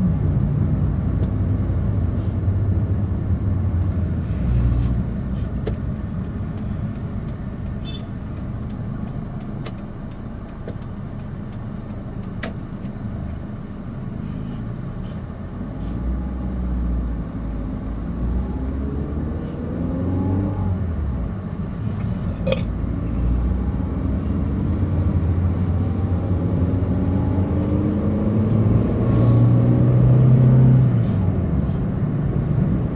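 Car engine and tyre road noise heard from inside the cabin while driving, a steady low rumble. In the second half the engine pitch rises several times as the car accelerates.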